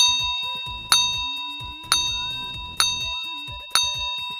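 Countdown timer sound effect: a bell-like ding struck about once a second, five times, each ringing out and fading before the next.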